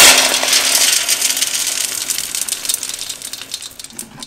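Wood pellets pouring out of a Yoder YS640 pellet smoker's hopper clean-out chute into a metal can: a loud, dense rattling rush that thins out to scattered clicks of the last pellets by the end.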